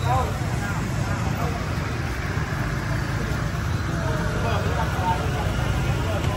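Busy street ambience: scattered chatter from a crowd of shoppers over a steady low rumble of passing motorbike traffic.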